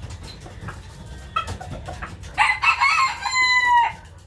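Rooster crowing once: a call of about a second and a half starting a little past halfway, ending in a held note, after a short call about a second and a half in.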